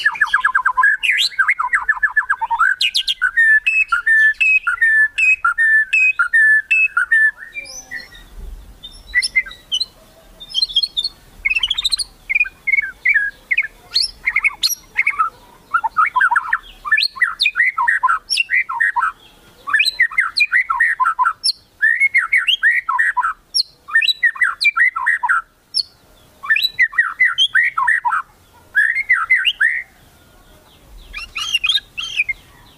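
Caged white-rumped shama (murai batu) singing: a fast rattling run of repeated notes for about the first seven seconds, its 'kretekan', meant to provoke rival birds into singing. After a short lull it sings a long string of short bursts of sweeping whistled phrases.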